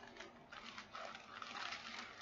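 Faint rustling and light clicking of small plastic bags of diamond painting drills being handled.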